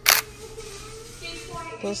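Camera shutter click sound effect: one short, sharp click just after the start, marking an editing transition.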